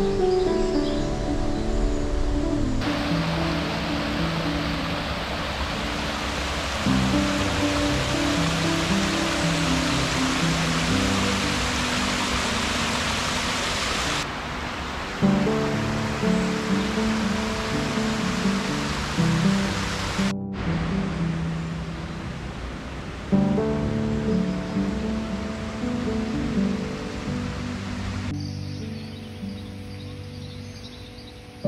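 Background music with a stepping melody. For much of the first two-thirds a steady rushing noise sits under it, cut off abruptly about twenty seconds in.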